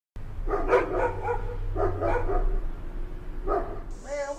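A dog barking repeatedly: two runs of several quick barks, then a single bark near the end, over a steady low hum.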